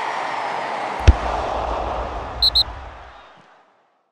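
End-card transition sound effect: a rushing whoosh of noise with one sharp boom about a second in, two short high blips a little after two seconds, then a fade out to silence.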